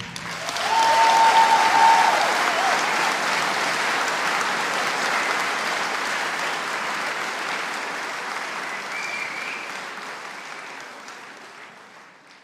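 Audience applauding as the brass band's piece ends, with a brief cheer about a second in; the applause slowly fades away.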